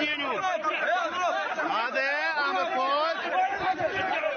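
Several men talking at once, their voices overlapping in a jumble of chatter.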